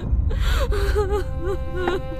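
A sharp, distressed gasp about half a second in, over sad background music with sustained strings.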